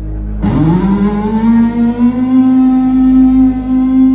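Electric guitar played live through an amplifier: a long note that swoops up in pitch about half a second in and then holds steady, over a sustained backing chord.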